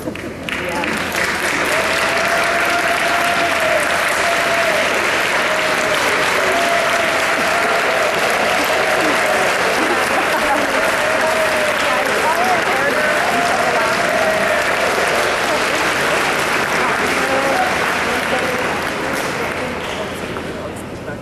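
Audience clapping steadily, with voices cheering and whooping over it. It swells up within the first couple of seconds and eases off near the end.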